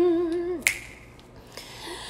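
A woman's unaccompanied sung note is held, then falls away about half a second in. Just after it comes a single sharp finger snap, and the rest is quiet.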